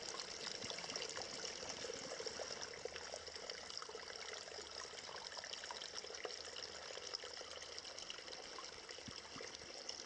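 An underground stream trickling and splashing over rocks in a cave: a steady rush of water dotted with many small splashes.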